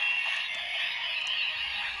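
Electronic sound from a Kamen Rider Zi-O Ziku-Driver toy belt, playing as a thin, steady high tone through the toy's small speaker while its display is lit.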